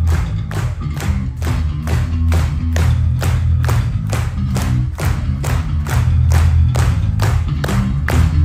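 Live progressive rock band playing an instrumental passage loudly, with deep bass and drums keeping a steady beat of about three strikes a second.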